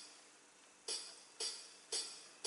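Count-in before the song: three sharp percussive clicks about half a second apart, starting about a second in, over faint hiss.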